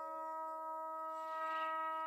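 Hip-hop instrumental beat in a break: the drums and bass drop out, leaving a quiet chord of steady synth tones held throughout.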